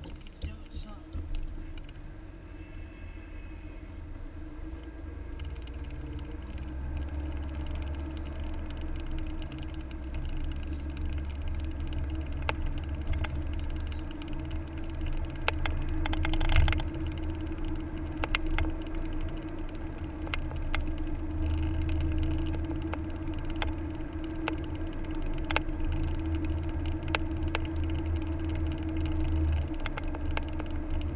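Inside a moving car: a steady low rumble of road and engine with a constant hum, growing louder over the first several seconds, and scattered sharp clicks and ticks of cabin rattle.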